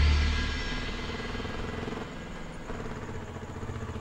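Motorcycle engine running at low speed under a soft background music score. A loud, deep musical drone fades out within the first second.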